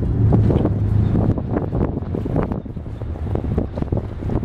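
Wind buffeting the microphone in uneven gusts, over the low drone of a motor yacht's engines running as it manoeuvres.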